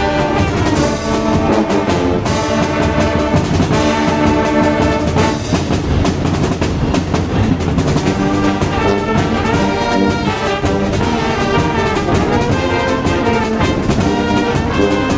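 A marching band's brass section of trumpets, trombones and sousaphone playing sustained full chords, with drums beneath.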